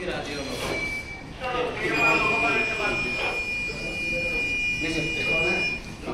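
A buzzer sounding one steady high-pitched tone for about four seconds, starting about two seconds in, after a short blip of the same tone, over people talking in the room.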